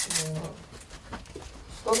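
People's voices in a small stone cellar: a brief murmured voice sound at the start, a quieter stretch with a few faint knocks, then speech again near the end.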